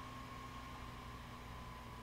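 Faint steady hiss of room tone, with a thin steady whine and a low hum beneath it.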